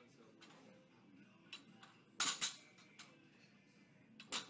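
Plate-loaded barbell set back down on a rubber floor mat between Pendlay rows: a sharp clank of the iron plates about two seconds in, with a quick second knock as it settles, and a couple of faint clinks before it.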